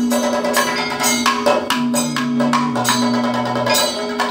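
Kathakali accompaniment: chenda and maddalam drums struck in a quick, steady pattern, with the singers' chengila gong and ilathalam cymbals, over a steady held tone. A low, stepping melodic line comes in about halfway through.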